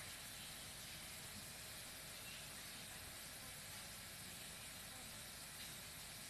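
Faint, steady hiss of room tone and recording noise, with no other sound.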